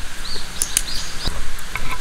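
Grated potato cake frying in oil on a hot-sandwich-maker plate: a steady sizzle with a few small clicks. Two brief bird chirps are heard in the first second.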